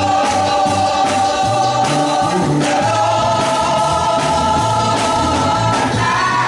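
Female gospel vocal group singing in harmony, holding long notes over a low bass accompaniment.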